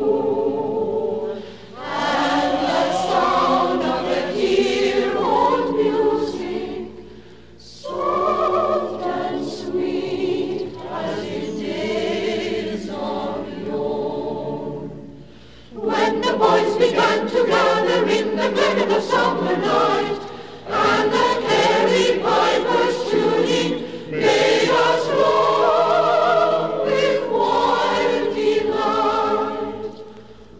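Choir singing a song in phrases, with short pauses between them.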